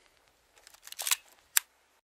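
A few short, faint clicks about a second in, followed by one sharper click half a second later.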